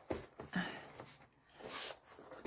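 Hands handling a padded fabric zip case packed with coloured pencils: a few soft rustles and light knocks, with a longer rustle near the end.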